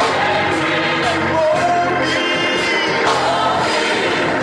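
Gospel song: singing over held Hammond organ chords, with the music going on steadily throughout.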